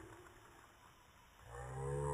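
A low, drawn-out vocal call with a wavering pitch starts about one and a half seconds in, after a quiet stretch.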